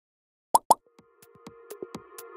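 Electronic intro sting: two quick pops about half a second in, then a held synth tone with soft ticking beats building up.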